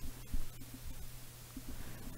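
Quiet computer keyboard keystrokes, a few faint taps in the first second, over a steady low electrical hum.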